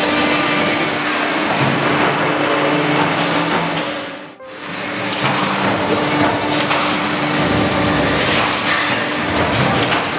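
CNC turret punch press working sheet steel: repeated punching knocks over a steady machine hum and workshop noise. The sound drops away briefly about four seconds in, then comes back.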